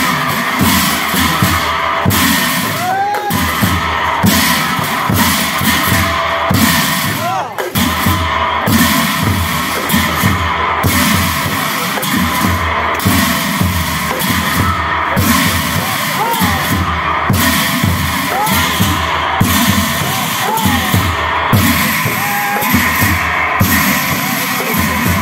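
Nagara Naam ensemble playing: large nagara drums beaten in a fast, driving rhythm under a continuous clash of big brass hand cymbals, with voices over it.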